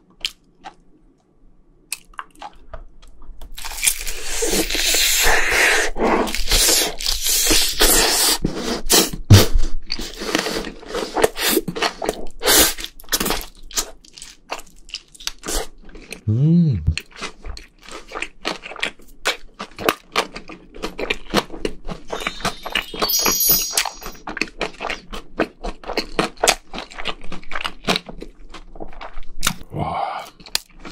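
Close-miked eating of crispy seasoned fried chicken dipped in creamy sauce. After a quiet start come loud, rapid crunches of the crust as it is bitten and chewed, then steadier chewing with repeated smaller crunches, and a short hummed sound about halfway through.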